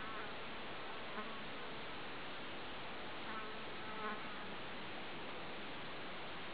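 Faint buzzing of flying insects, a few brief buzzes over a steady low background hiss.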